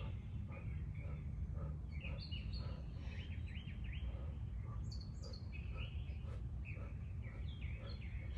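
Small birds chirping and calling again and again over a steady low background rumble.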